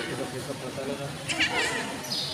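A baby's short, high-pitched cry with a wavering pitch, about one and a half seconds in, over the chatter of people around.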